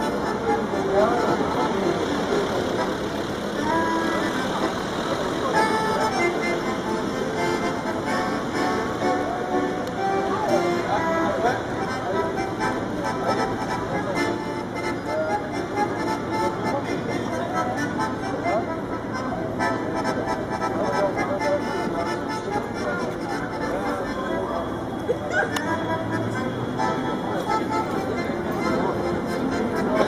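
Piano accordion playing a tune of steady chords and melody, with no singing.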